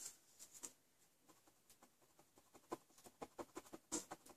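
Faint small clicks and paper rustles of hands handling a cardstock card on a craft mat, sparse at first and busier in the second half.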